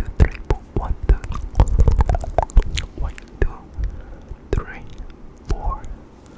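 Close-miked ASMR whispering mixed with many quick clicks and soft low thumps right at the microphone, the whispering coming in short patches.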